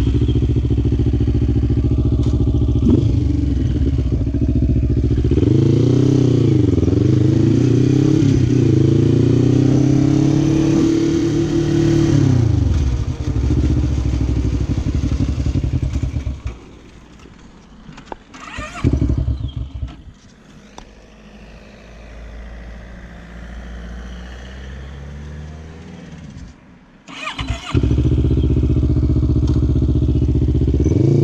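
Quad bike engine running loud, its revs rising and falling over the first dozen seconds and then settling. Its sound drops to a low level for about ten seconds, with a single click in that quiet stretch. It comes back loud about two seconds before the end.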